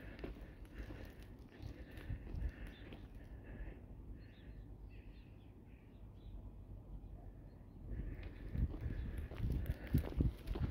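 Footsteps on gravel, louder and more distinct in the last two seconds, over faint outdoor ambience with scattered high calls in the first part.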